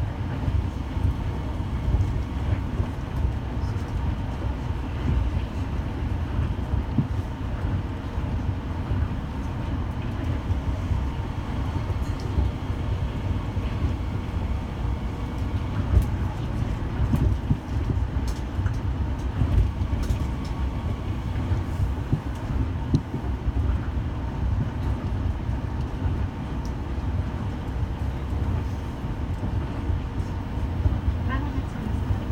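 Running noise inside a Tama Monorail straddle-beam train between stations: a steady low rumble of its rubber tyres on the concrete guideway, with a faint steady hum over it.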